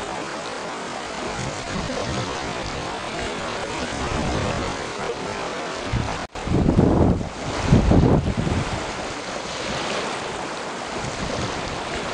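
Strong wind rushing over the camcorder's microphone above a choppy sea, a steady noisy rush throughout. About seven and eight seconds in, two heavy gusts buffet the microphone, just after a brief dropout in the sound.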